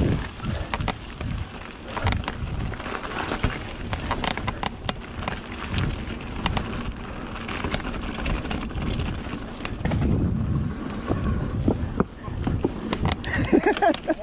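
Mountain bike riding over a rough dirt forest trail: a continuous tyre rumble with irregular clicks, knocks and rattles from the bike over bumps and roots. A high, broken buzz comes and goes for a few seconds in the middle.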